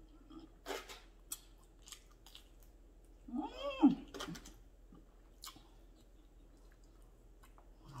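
Close-up chewing with soft wet mouth clicks. About three seconds in comes a drawn-out 'mmm' of enjoyment that rises and falls in pitch.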